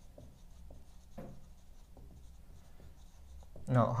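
Marker pen writing on a whiteboard: a few faint strokes of the felt tip on the board.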